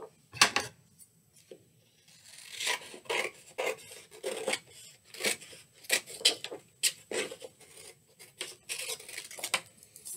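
Scissors cutting through a sheet of brown paper: a string of short, irregular snips.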